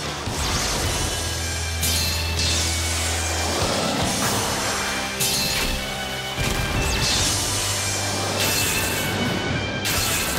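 Animated battle sound effects over background music: a spinning battle top's steady low hum and several crashing impacts a few seconds apart as one top dives repeatedly into another.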